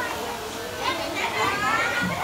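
Children's high-pitched voices and chatter, busiest in the second half, over a brief adult "ừ" at the start.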